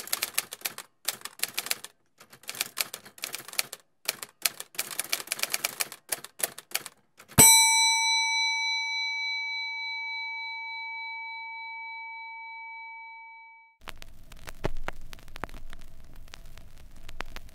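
Typewriter keys clacking in quick runs for about seven seconds. A Victorian counter bell is then struck once and rings out with several clear tones, fading over about six seconds. Near the end, the crackle and hiss of a vinyl record's run-out groove begins.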